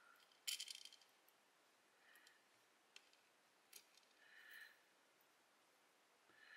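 Mostly near silence, with a quick cluster of small metallic clicks about half a second in from tweezers and tiny brass lock pins being handled over a plastic pin tray, then a few single faint ticks and two short soft hisses.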